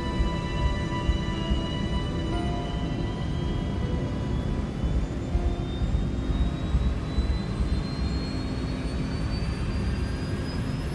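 A regional jet's twin turbofan engines spooling up, their whine rising steadily in pitch over a low rumble, as thrust is advanced for the takeoff roll.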